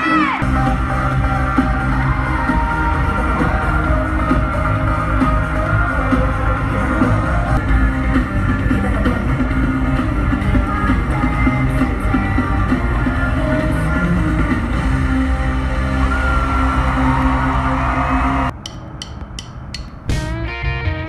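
Live pop concert music heard from the audience, loud with a heavy bass beat and singing. About a second and a half before the end it cuts abruptly to quieter music with strummed guitar.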